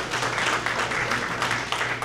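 Audience applauding: a dense, steady patter of many hands clapping that tails off at the end.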